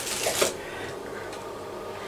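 A brief dry rustle of Rice Krispies shifting in a metal measuring cup about half a second in, then only low handling noise.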